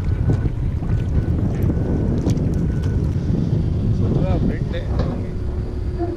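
Steady wind rumble buffeting an action camera's microphone on open water, with brief faint voices about four seconds in.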